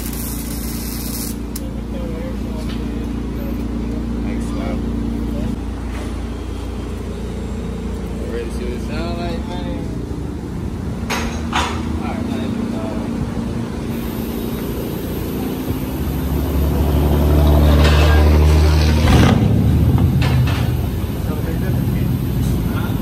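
A pickup truck's engine idling steadily, swelling louder for a couple of seconds about three quarters of the way through, with faint voices in the background.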